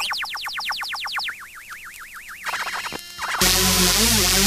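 Electronic music: rapid falling synthesizer chirps, about ten a second, give way to a warbling, wobbling tone, then a loud, dense electronic section crashes in about three and a half seconds in.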